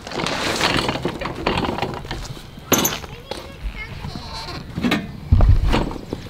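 An uprooted dwarf Alberta spruce being handled: its branches and torn roots rustle and crackle. There is a sharp crack about three seconds in and a heavy low thump near the end.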